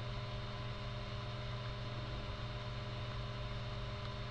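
Steady low electrical hum with a faint hiss underneath: the background noise of the recording chain between speech.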